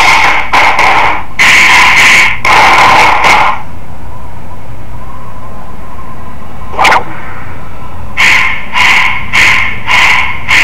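Loud, heavily distorted music with a pulsing beat. It drops away for about four seconds in the middle, where there is only one sharp crack, then the beat comes back at about one pulse every half second or so.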